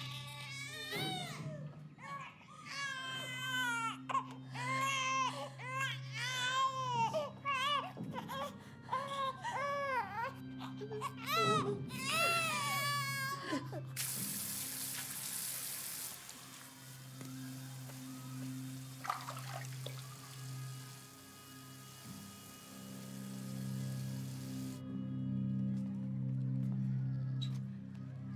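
A newborn baby crying in repeated rising-and-falling wails, mixed with a young woman sobbing, over a low sustained music score. The crying stops about halfway through, and a steady hiss-like rushing noise takes over for about ten seconds.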